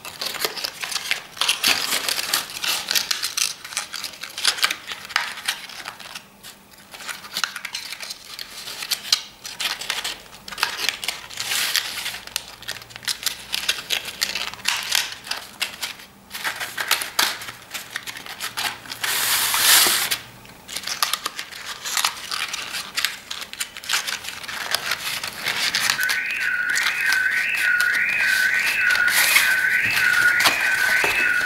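Patterned scrapbook paper rustling and crinkling as hands fold and crease its sides up into a box-shaped frame, in many short scattered strokes with a louder rasp about two-thirds of the way through. Near the end a repeated high chirp comes in, about two a second.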